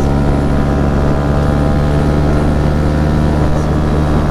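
2016 Yamaha MT-125's single-cylinder four-stroke engine through an Akrapovic titanium exhaust, running at a steady engine speed while the bike is ridden through a bend, with wind rush.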